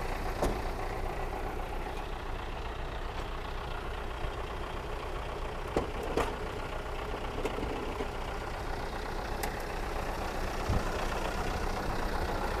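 Diesel engine of a Thaco FD450 dump truck idling steadily after being started, which the seller says is blowing by and needs new piston rings. A few sharp clicks and knocks from the cab being handled sound over the idle.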